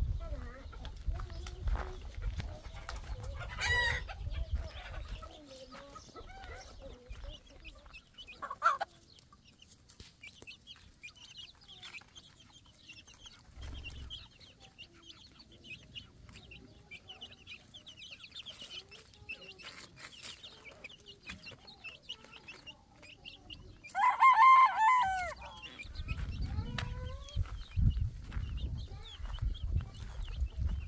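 Domestic chickens: a hen clucking and chicks peeping softly, with a loud rooster crow about 24 seconds in, the loudest sound. A low rumble, like wind on the microphone, runs through the first few seconds and the last few.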